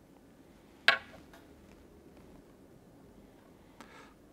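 Small clicks from a clear plastic bombarda float and fishing line being handled over a tabletop while line is threaded through the float's tube: one sharp click about a second in, a few faint ticks after it, and another small click near the end.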